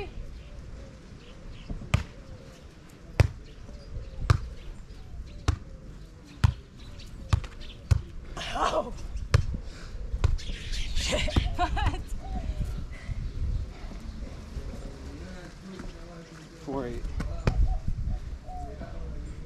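A volleyball rally: a sharp slap each time the ball is hit with the hands or forearms, about once a second for the first ten seconds, then more sparsely. Short vocal exclamations come between the hits.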